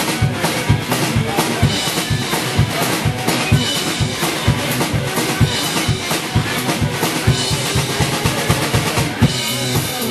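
Live blues-rock played by electric guitar and drum kit, an instrumental stretch without singing; the bass drum and snare keep a steady beat under the guitar.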